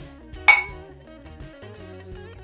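A single sharp clink of glass on glass about half a second in, a glass pitcher knocking against a juice glass as the pour begins, over quiet background music.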